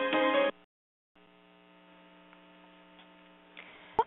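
Waiting music on the webinar audio line cuts off suddenly about half a second in. After a short gap, a faint steady electrical hum is on the line until just before the host starts speaking.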